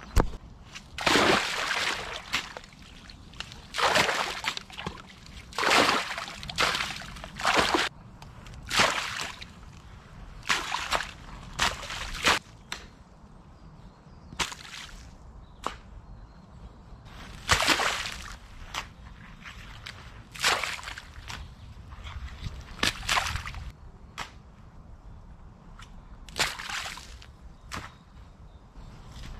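Spade work backfilling a water-filled trench: a string of quick scoops and throws, one every second or two, with earth slopping into muddy water.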